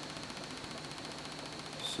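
Faint, rapid, even ticking of an old window motor run as a pulse motor on a twin back-EMF circuit, with a thin steady high whine.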